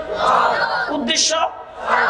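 A crowd of listeners shouts a one-word reply, 'chaul' (rice), in unison, twice, at the start and again near the end. Between the shouts a man preaches through a public-address system.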